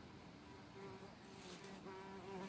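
Faint buzzing of a bumblebee in flight, a low hum that wavers and comes and goes from just under a second in.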